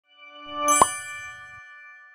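Short logo chime: bright ringing tones swell up to one sharp strike just under a second in, then ring out and fade slowly.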